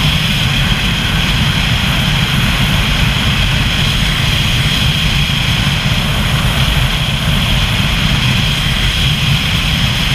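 Steady rush of wind and a running engine from a vehicle moving at road speed, with a constant low rumble.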